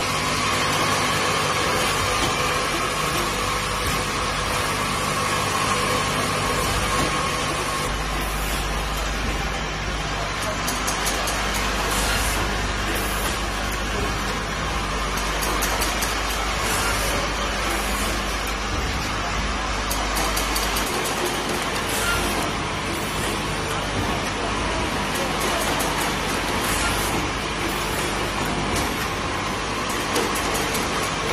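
Automatic spout-pouch filling and capping machine running: a steady, dense mechanical din of the turntable, conveyor and capping heads at work, with a deep hum that comes in about eight seconds in and drops out about twenty seconds in.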